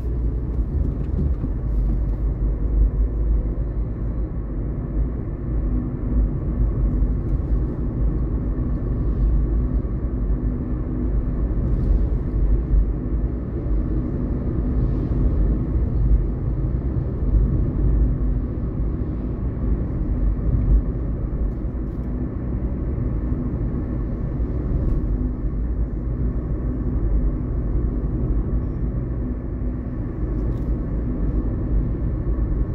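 A car's engine and road noise heard from inside the cabin while driving: a steady low rumble with a faint engine hum.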